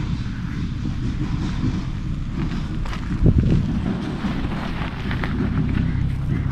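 Wind buffeting the camera's microphone: a steady low rumble with a brief louder bump about three seconds in.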